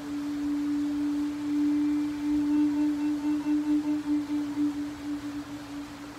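Native American flute holding one long low note, steady at first, then swelling and fading in a slow pulsing vibrato from about halfway through, and dying away near the end.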